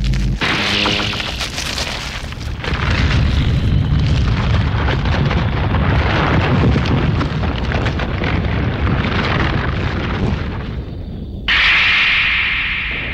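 Anime sound effect: a loud, dense, noisy rumble that starts abruptly and goes on for about eleven seconds as a demon-eating plant bursts out of a seed and grows. Near the end it cuts off and music takes over.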